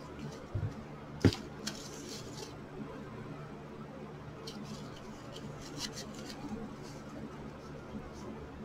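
Light handling sounds of satin ribbon being smoothed and pressed flat on a tabletop by hand: soft rustles and small clicks, with one sharp tap a little over a second in. A steady low hum runs underneath.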